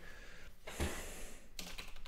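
Faint typing on a computer keyboard: a run of quick keystrokes starting a little past halfway, after a brief soft hiss.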